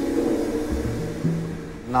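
Guitar music: held notes ring and fade out, then a few low notes are played in the second half.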